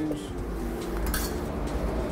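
A knife working along a mackerel fillet on a plastic chopping board, with one short, sharp scrape about a second in. A steady low hum and faint held tones run underneath.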